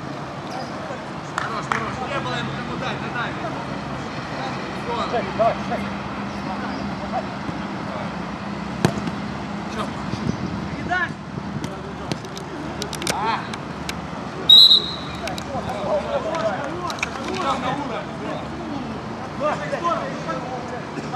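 Players shouting during a five-a-side football match, with scattered sharp thuds of the ball being kicked. About two-thirds of the way through comes one short, high referee's whistle blast, the loudest sound.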